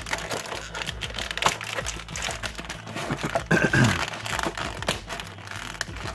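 Clear plastic blister packaging crinkling and crackling in irregular bursts as fingers press and flex it to work a small die-cast metal figure loose. A short murmur from a man comes about halfway through.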